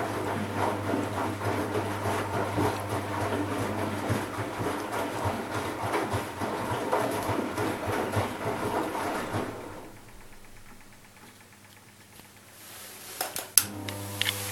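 Front-loading washing machine turning its drum after the main wash, its motor humming steadily under the churning of wet, soapy laundry. The drum stops after about nine and a half seconds and the machine goes much quieter, then gives a few sharp clicks near the end.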